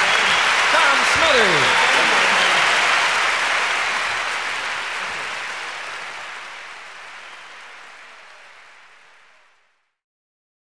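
Large audience applauding and cheering at the end of a live song, with a few shouts in the first couple of seconds; the applause then fades out steadily to silence just before the end.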